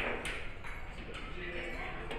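Low voices murmuring in a large hall, with a few faint light clicks.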